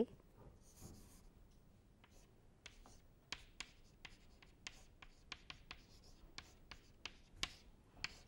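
Chalk writing on a chalkboard: faint, quick taps and short scratches of the chalk, most of them from about two and a half seconds in.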